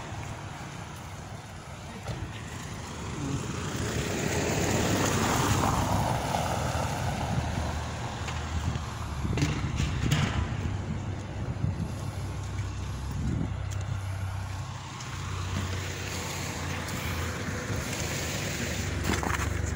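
Street traffic: a vehicle drives past, its noise swelling to a peak about five seconds in and then fading, over a low engine rumble. A few sharp knocks sound around ten seconds in.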